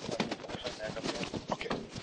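Scuffling of a close physical struggle: many quick knocks, bumps and clothing rustle, with short bits of voice mixed in.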